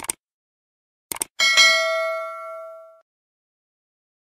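A bell struck once, about a second and a half in, ringing and fading away over about a second and a half. A few short clicks come before it, one at the very start and two in quick succession just before the strike.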